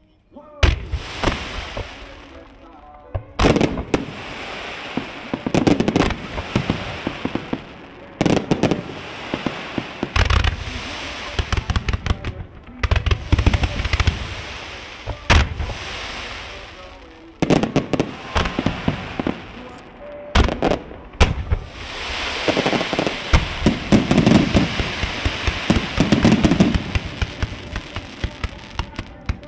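Aerial firework shells bursting one after another, sharp booms with low rumbles and crackling trails, starting suddenly about half a second in and coming thicker and faster from about twenty seconds on.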